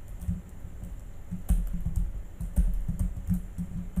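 Typing on a computer keyboard: irregular keystrokes coming in short runs.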